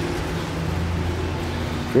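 A steady low mechanical hum with several held tones, running evenly without a break.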